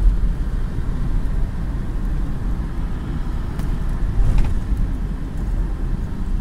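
Steady low road and engine rumble of a car moving at speed, heard from inside the cabin.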